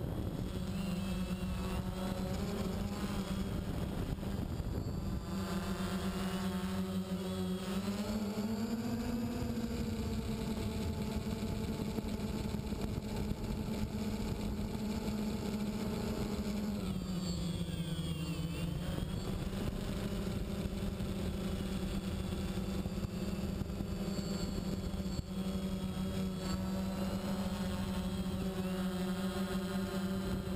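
Quadcopter's four electric motors and propellers whining steadily, heard through the onboard action camera's microphone. The pitch rises about eight seconds in and dips briefly a little past halfway as the motors speed up and slow down.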